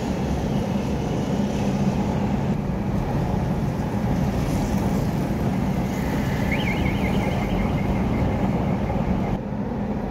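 Steady engine hum and road noise of a vehicle driving, heard from on board. A faint, high, repeated chirp starts past the middle and stops suddenly near the end.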